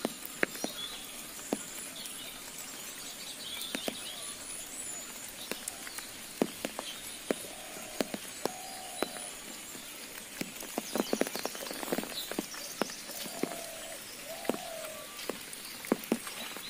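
Raindrops tapping irregularly on an umbrella overhead, scattered single ticks with a quick flurry about two-thirds of the way through, over a faint steady hiss of light rain.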